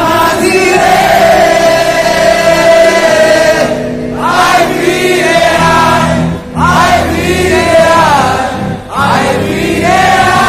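Live band music with many voices singing along in unison, in phrases broken by short pauses, heard loud and close from within the audience.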